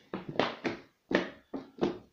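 A large plastic beer bottle being handled and turned in the hands: about six short knocks and crackles of the plastic, each ringing briefly.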